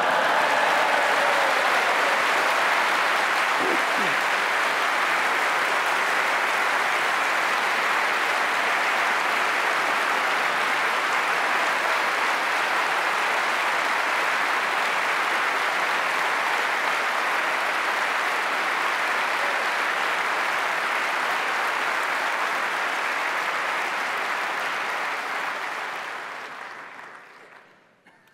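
A large audience applauding steadily, the clapping dying away over the last few seconds.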